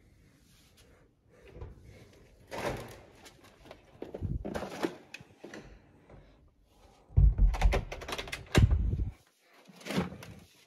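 Front door of a flat being unlocked and opened: a series of clicks, knocks and thuds from the lock, handle and door, with a cluster of louder thumps and handling noise near the end.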